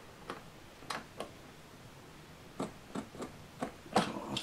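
Light, irregularly spaced clicks and taps, about eight in four seconds, as a pencil and rule are handled against a model station's canopy roof while measuring and marking.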